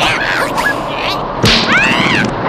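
Cartoon fight sound effects: whip-like swishes with a sharp smack about one and a half seconds in, followed by a short rising-and-falling squeaky cry from a cartoon character.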